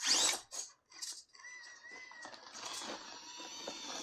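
Axial AX24 RC rock crawler with a Micro Komodo motor climbing over crumpled sheeting: a few short crinkling scrapes in the first second, then a thin, high whine from the motor and gears that sets in after about a second and holds steady.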